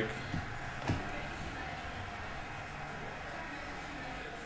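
Trading cards being shuffled through by hand: a couple of soft card clicks in the first second, over a steady low room hum.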